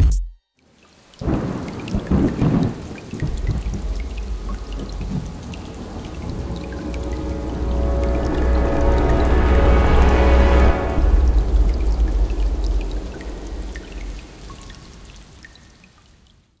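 Sound-design swell for an animated logo: a low thunder-like rumble with crackling starts about a second in. A layer of sustained tones builds with it to a peak about ten seconds in, then everything fades away.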